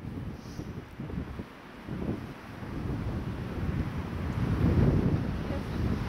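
Wind buffeting the microphone: an uneven, gusty low rumble that drops off about a second and a half in, then builds again to its strongest a little before the end.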